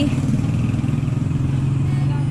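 A steady, low engine drone, like a motorcycle engine running at idle, holding an even pitch.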